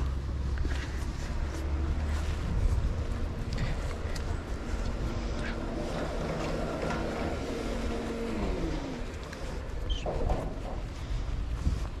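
A motor vehicle driving past on the street: a low rumble, then a steady engine hum that drops in pitch and fades about eight and a half seconds in as it goes by.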